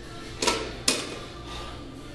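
Two short knocks about half a second apart, the second sharper and ringing on briefly, as of gym equipment being handled.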